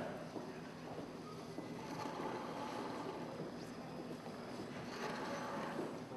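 Steady background noise of a large room, a low hum under an even hiss.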